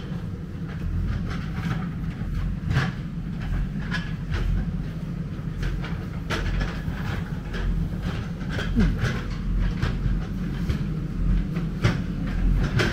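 Backhoe loader's diesel engine running steadily with a deep rumble, with irregular clanks and knocks throughout as the machine works loose soil.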